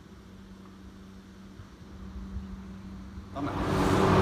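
Faint steady low hum with a low rumble underneath; a louder, broader background noise fades in near the end.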